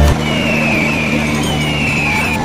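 Diesel tractor engines running steadily under load as two tractors pull against each other in a tug of war. Two falling high tones sound over them, each about a second long.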